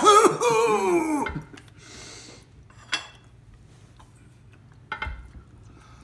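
A man's loud drawn-out cry with a wavering, falling pitch, lasting about a second, then quiet with a couple of faint clicks.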